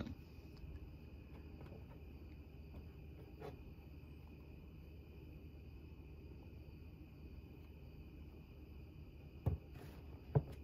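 Quiet room with a faint steady high-pitched hum. A light tap comes about three and a half seconds in, and a low thump near the end, as the plastic alarm control panel is handled and set back down on the table.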